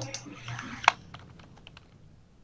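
Computer keyboard typing: a quick run of keystrokes, one sharper and louder a little under a second in, thinning to scattered key clicks.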